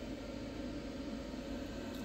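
Steady hiss and low hum of equipment cooling fans running, with no distinct events.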